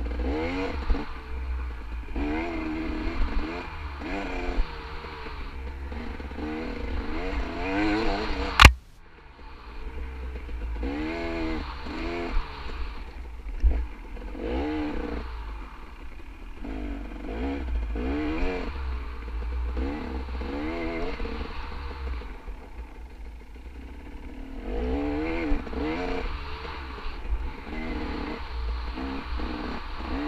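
Dirt bike engine revving up and down over and over as the throttle is worked, with a steady low rumble underneath. A single sharp knock about nine seconds in, after which the engine briefly drops off.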